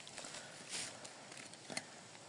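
Faint rustle of dry grass, pine needles and leaves on the forest floor, one soft swish a little under a second in, then a single light tick near the end.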